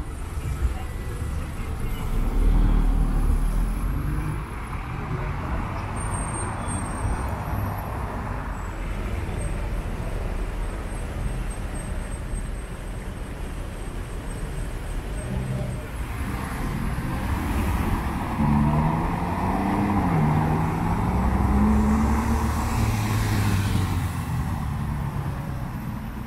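Road traffic on a busy city avenue: cars and a motorcycle driving past, engines and tyres on the road, with voices of passers-by mixed in.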